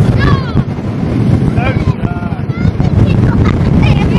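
Wind buffeting the microphone on a speedboat running at speed, with the boat's engine and water noise underneath. Short, high voice calls cut through a few times.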